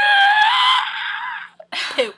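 A woman's high-pitched vocal squeal, held on one note and rising slightly before it breaks off about a second and a half in. A short breathy burst follows near the end.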